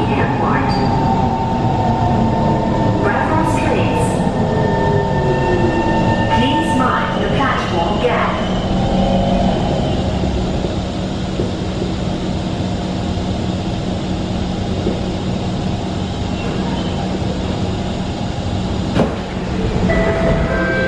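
C151 MRT train braking into a station: the traction motors' whine falls in pitch as it slows over rumbling wheels, then a steady hum while it stands. A sharp knock near the end as the doors open.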